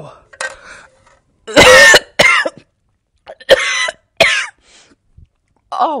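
A woman coughing and letting out short pained exclamations in a string of about five bursts, the loudest about two seconds in, as she reacts to a mouthful of strong sea-salt water.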